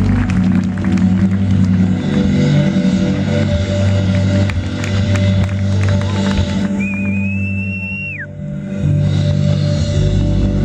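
Smooth jazz band playing live, with a bass line and keyboard chords. About seven seconds in, a single high note is held for about a second, wavering slightly, then slides down as it ends.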